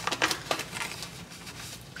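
A spoon scooping powdered hot cocoa mix out of a foil-lined pouch, with the pouch crinkling. A few light taps and scrapes come in the first half second, then quieter rustling.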